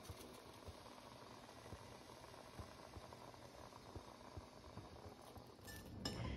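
Water simmering faintly in a pot where artichokes are steaming in a steamer basket, with small irregular pops.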